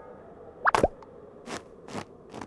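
A cartoon plop sound effect: two quick plops about two-thirds of a second in, each a short upward glide in pitch, followed by a couple of faint soft taps.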